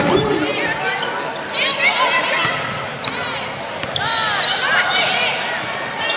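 Basketball play on a hardwood court: sneakers squeak in short bunches and the ball bounces, with voices of players and spectators in the hall.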